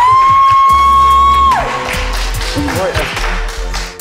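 A woman's long, high whoop of excitement held on one pitch for about a second and a half, then hands clapping and excited voices over background music.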